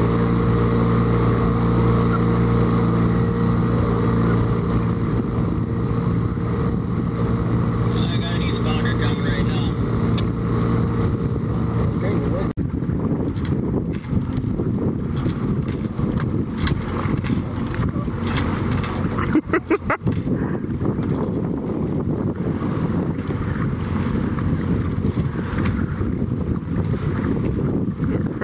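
A sailboat's motor running at a steady pitch, a hum with a constant tone. About twelve seconds in it gives way abruptly to wind rushing over the microphone and water noise, with a few sharp knocks around twenty seconds in.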